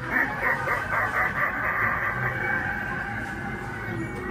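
Animatronic ringmaster's built-in speaker playing its carnival-style soundtrack: a quick run of repeated pulses, about five a second, that gives way to steadier held tones.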